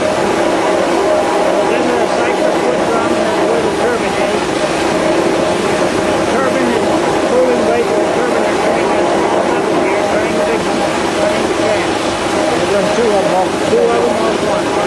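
Water turbine machinery running with a steady hum, with several voices murmuring over it.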